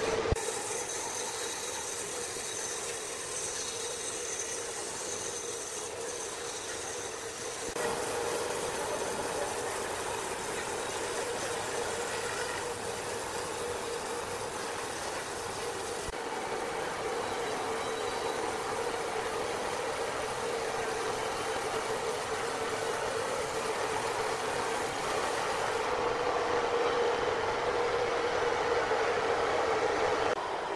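A large band sawmill running steadily with a constant hum, its band blade cutting through a very large log, with a few abrupt changes in the sound where the footage is cut.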